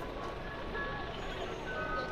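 Busy outdoor city noise of traffic and people, with a simple electronic melody of short held single notes playing over it.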